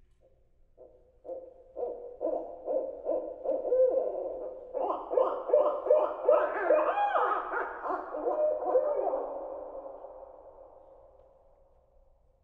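Recorded barred owls played over the hall's speakers. A few separate hoots build into a dense chorus of many overlapping hoots and wavering calls, which then fades out near the end.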